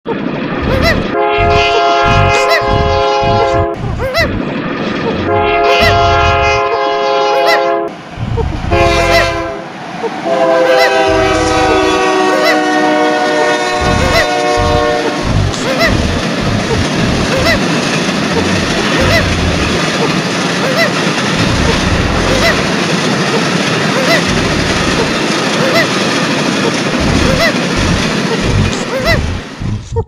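Diesel locomotive horn blowing long blasts: two of about three seconds each, a short one, then a longer one that sags slightly in pitch. After that the steady rumble of a train running, with regular clicks of wheels on rail joints, until it cuts off just before the end. Irregular low thuds run under it all.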